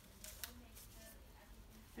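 Near silence with a few faint, brief clicks and rustles in the first half-second, from the plastic swab packaging and the lid of a sample vial being handled.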